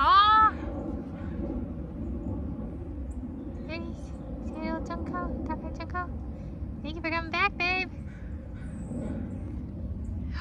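A woman's high-pitched wordless voice: a short loud exclamation at the start, a run of brief high sounds a few seconds in, and three quick rising notes a little later. Under it all is a steady low background rumble.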